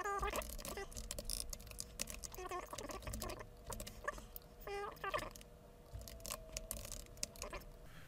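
Computer keyboard typing in irregular runs of keystrokes, with a few brief voice sounds from the typist and a faint steady hum.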